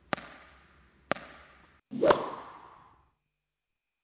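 Three sharp, whip-crack-like sound-effect hits about a second apart, each trailing off; the third is the loudest and has a short swell leading into it.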